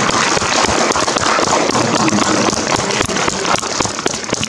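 Audience applauding: a dense clatter of many hands clapping, held steady.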